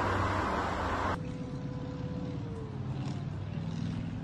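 Outdoor background noise: a loud, even rush that cuts off suddenly about a second in, giving way to a quieter low, steady engine-like hum with a faint falling whine.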